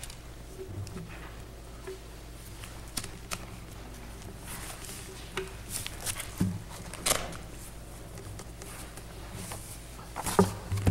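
Papers rustling and being handled in a quiet room, with scattered short rustles and small knocks over a steady low hum, the loudest about seven seconds in.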